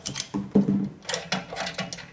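Irregular mechanical clicks and rattles from a small autoclave bubble remover's door mechanism as it is worked open by hand after the chamber has vented, loudest about half a second in.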